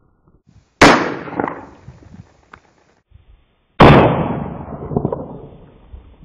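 Two shots from a 1911-A1 pistol in .45 ACP, about three seconds apart, each followed by a ringing echo that dies away over a second or more. The second shot is duller and has a longer tail.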